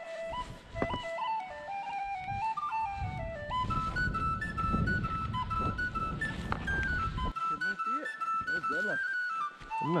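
Background music: a flute-like melody moving in stepped notes. Under it, a loud rush of wind and snow noise from the fast ski run builds about three and a half seconds in and cuts off suddenly about seven seconds in.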